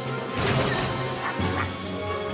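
Tense cartoon film score with crashing impact hits. The loudest hit comes about half a second in and another sharp hit follows near the end.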